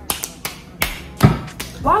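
A person's hands tapping and slapping, about six sharp taps in quick, irregular succession, the loudest a heavier thud a little past halfway.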